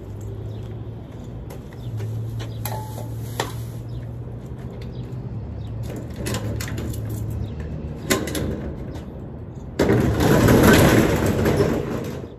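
A few sharp metallic clicks at the latch and padlock of a steel roll-up storage-unit door over a steady low hum, then the door rolls up with a loud rattle for the last two seconds.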